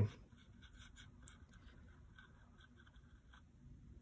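Faint, irregular scraping and tapping of a paintbrush working paint in the wells of a plastic palette.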